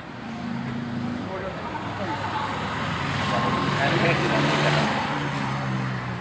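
A motor vehicle passing on the nearby road, its noise swelling to a peak about four seconds in and then easing, over background voices.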